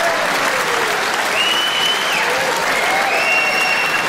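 A live stand-up comedy audience in a theatre applauding steadily after a punchline. Two long, high, steady tones sound over the clapping partway through.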